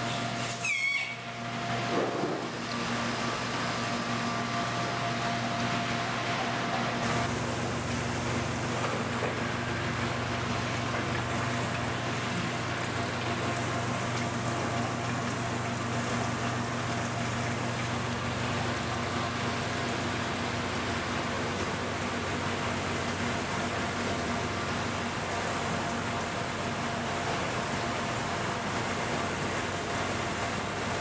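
Steady rush of water running through rows of aquarium holding tanks, over a constant hum of pumps and aeration equipment.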